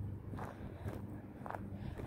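Footsteps of a person walking, soft steps about two a second, over a faint steady low hum.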